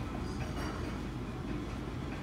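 Steady low rumble of restaurant background noise, with a few faint clicks.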